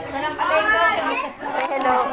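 Only speech: people talking, the words not made out.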